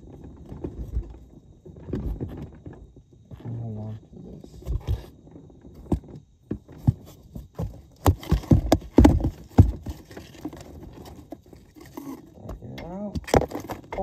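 Rulers knocking and scraping inside a small elevator shaft as they fish for a fallen string. The clatter is loudest and densest about eight to ten seconds in.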